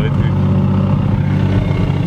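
Toyota Hilux's swapped-in 2JZ-GTE turbocharged straight-six running at a steady, unchanging speed, heard loud inside the cabin before a full-throttle pull.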